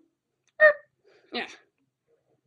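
A person's voice: a brief vocal sound about half a second in, then a spoken 'yeah' that falls in pitch, with dead silence around them.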